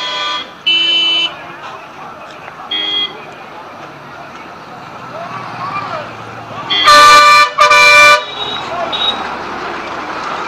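Vehicle horns honking in street traffic: a short toot about a second in, another near three seconds, then two loud blasts a half-second apart around seven to eight seconds in, over steady traffic noise and distant voices.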